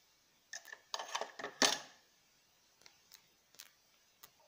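Clicks and clattering of hard plastic and metal washing-machine parts being handled and snapped into place as the wash/spin shift arm is fitted to the mechanism base. A quick run of rattling clicks comes about half a second to two seconds in, loudest near its end, followed by a few light single clicks.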